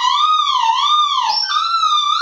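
Electric guitar pickups squealing through a tube amp with a resistive Hot Plate attenuator, held close to the amp head: a loud, wavering high whistle that wobbles up and down in pitch and jumps a little higher about one and a half seconds in. It is the pickups reacting to the vibrating output transformer's magnetic field, a natural and harmless effect.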